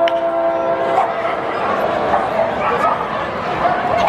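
A wooden baseball bat cracks against a pitched ball right at the start, sending it into the air for a fly ball. Over it a steady held tone sounds for about the first second, and voices from the stands carry on after it.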